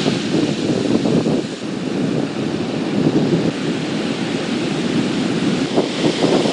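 Ocean surf breaking on a sandy beach, a steady rush of noise, with wind on the microphone.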